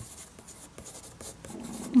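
Graphite pencil writing on sketchbook paper: a run of short, irregular scratchy strokes as a word is lettered by hand.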